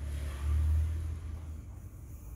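A low rumble that swells about half a second in and eases off after about a second and a half.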